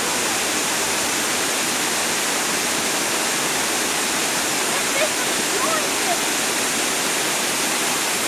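Steady rush of water spilling over a dam, a constant hiss with little low rumble.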